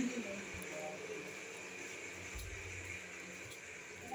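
Faint background noise with a brief, faint voice in the first second and a short low rumble about halfway through.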